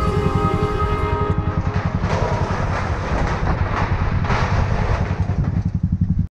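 Motorcycle engine running with a rapid, steady low thump as the bike crosses a steel truss bridge, with rattling from the bridge deck and a rushing noise over it. Background music fades out about a second in.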